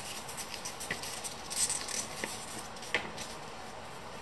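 Paper picture cards being handled and shuffled in the hands: soft rustles and a few small taps, over faint room noise.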